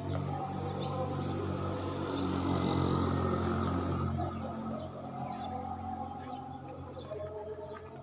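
Background music of sustained, slowly changing chords, swelling a little in the middle.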